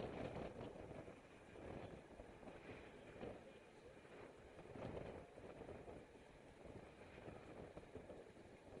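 Faint, uneven wind rumble and road noise on the microphone of a camera mounted on a moving road bike, swelling and easing in gusts.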